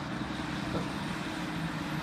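A school bus engine running as the bus drives up the road toward the listener, a steady low hum with road noise that grows gradually louder.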